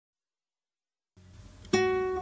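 Silence, then a faint hiss from about a second in, and near the end a single plucked guitar note that rings on: the first note of a guitar intro.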